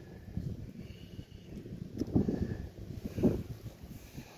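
Wind rumbling on a handheld phone microphone, with a couple of soft thumps about two and three seconds in.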